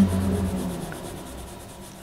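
Faint pencil rubbing on paper in light shading strokes.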